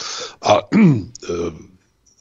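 A man clearing his throat and saying a short word between phrases, followed by a brief pause near the end.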